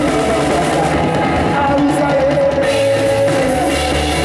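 Live afro-rock band playing at full volume: distorted electric guitar and drum kit, with singing.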